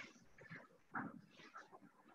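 Near silence: room tone, with one faint short sound about a second in.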